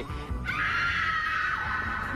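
A group of voices screaming together, answering a call to scream. It starts about half a second in and is held to the end, over background music.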